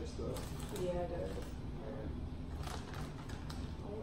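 Crinkling of a chip bag as it is handled and chips are pulled out, with scattered sharp crackles.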